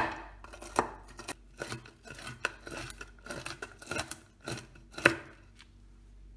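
Kitchen knife chopping walnuts on a bamboo cutting board: an irregular run of sharp knocks of the blade against the board, loudest right at the start and again about five seconds in, stopping just before the end.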